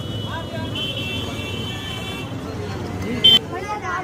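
Busy market street with traffic and scattered voices, and a steady high whine for the first couple of seconds. A short, sharp toot, plausibly a scooter or motorbike horn, a little over three seconds in is the loudest sound.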